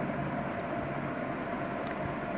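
Steady, unchanging mechanical hum and hiss with a faint constant tone, like a running fan or motor in the background.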